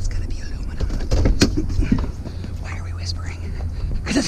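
Truck engine idling with a low hum, with a sharp click and knocks about a second in as the cab door is unlatched and opened; the hum fades after about three seconds.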